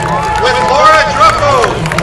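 Outdoor crowd cheering the marchers: many voices calling and whooping in short rising-and-falling cries, with scattered clapping.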